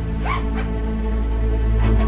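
Suspenseful background score with a steady low drone. About a quarter second in comes a short zip-like rasp as the canvas duffel bag is handled.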